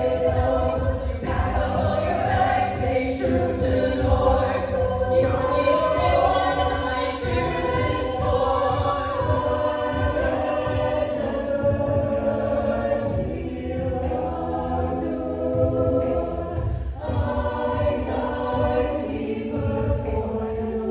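Collegiate a cappella group, mixed voices, singing an arranged pop song in close harmony through handheld microphones, with vocal percussion keeping a steady beat.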